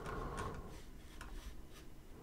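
A few faint clicks of a computer mouse over quiet room tone.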